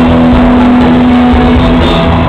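Live pop-rock band music played loud through a concert PA, heard from within the crowd, with one note held steady and ending near the end.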